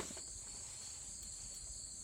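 Steady, high-pitched insect chorus outdoors, with a soft click at the very start.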